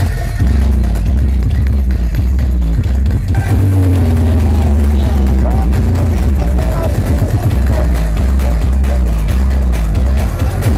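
Several giant stacked-subwoofer sound systems playing dance music at the same time, the mix dominated by dense, continuous heavy bass with clashing melodies on top. Wavering synth-like tones come in about three and a half seconds in.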